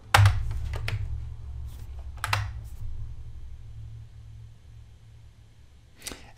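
A few computer keyboard keystrokes: the last keys of a typed command, with sharp clicks near the start, about a second in, and a little over two seconds in. Under them a low hum slowly fades away.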